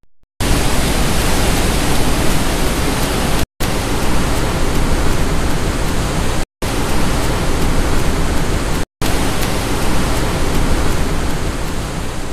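Loud, steady roar of rushing water at the Rat River Dam, broken by four brief silent dropouts: one at the start, then about every two to three seconds.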